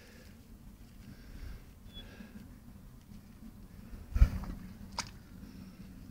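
Wader boots squelching and sucking in soft creek mud as a man struggles across slowly. A louder low thump comes about four seconds in, and a sharp click about a second later.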